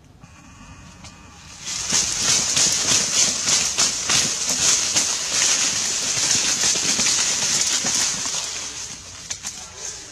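Rustling and crackling of leaves and brush, swelling up about a second and a half in and easing off near the end.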